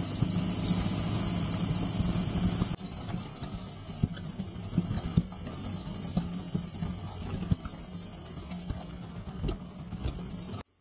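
BMW R1250GS Adventure's boxer-twin engine running steadily with wind noise while riding. About three seconds in the sound suddenly drops to a quieter engine hum with scattered ticks.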